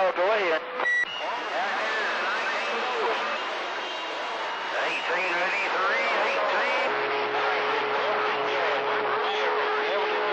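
CB radio receiver audio on the 11-metre AM band: several stations transmitting at once, their voices overlapping into a garble that no one can make out. Steady whistling tones come and go among the voices, the beat of carriers doubling on top of one another, with a click of a key-up about a second in. It is a roll-call pile-up, with so many stations keying at one time that the handles can't be picked out.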